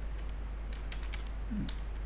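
Computer keyboard being typed on: a handful of separate key clicks as a new name is typed into a line of code, over a faint steady low hum.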